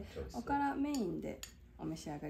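Chopsticks and small porcelain dishes clinking with a few sharp clicks, and a brief voice about halfway through.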